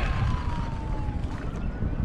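Wind buffeting the microphone over choppy water lapping at a kayak, with a faint thin tone that slides slowly down and then back up.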